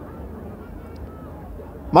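A pause in a man's speech, with only low, steady background noise. Near the end his voice comes back with a loud, drawn-out word.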